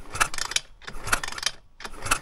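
Pit bike's 170 cc engine being kick-started twice, the kickstart mechanism clicking as the engine spins over. The spark plug is out of the engine and held against the engine ground to test for spark, so the engine does not fire; the ignition gives no proper spark, a fault the owner puts down to the ignition module.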